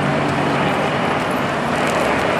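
City street traffic: a steady wash of cars running at an intersection.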